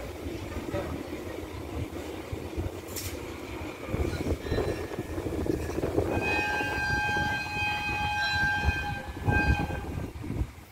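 Hitachi diesel-electric locomotive's horn sounded once, a steady multi-tone blast starting about six seconds in and held for about three and a half seconds, over the low rumble of the idling diesel engine.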